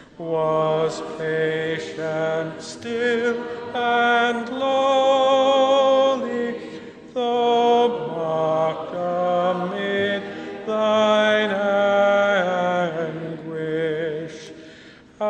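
A congregation singing a Lutheran chorale hymn in English, a slow melody of long held notes in phrases, with brief breaks for breath about halfway through and near the end.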